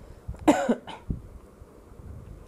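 A person coughing once, about half a second in, with a smaller cough or throat catch right after.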